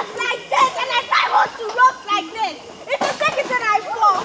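Children's voices talking and calling out in quick, broken bursts throughout.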